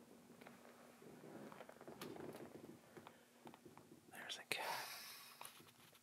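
Faint whispering close to the microphone, growing briefly louder and hissier about four seconds in.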